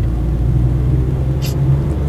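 Steady low drone of a Suzuki Alto's engine and tyre noise, heard from inside the car's cabin while it drives along a highway. There is a brief hiss about one and a half seconds in.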